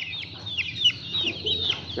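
Young chickens peeping inside a wire-mesh cage: many short, high peeps, several a second and overlapping.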